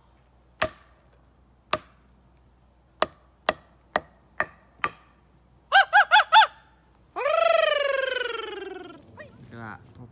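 A thin wooden slat struck against a small tree trunk seven times, sharp dry knocks coming quicker toward the middle. These are followed by four loud, short pitched honk-like notes and then one long wavering note that falls steadily in pitch.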